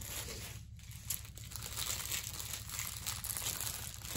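The plastic cover film on a diamond-painting canvas crinkling irregularly as the canvas is handled.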